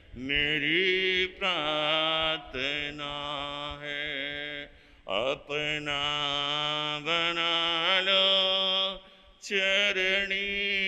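A man singing a devotional bhajan alone, with no accompaniment, in long drawn-out held notes. He breaks for breath about halfway through and again near the end.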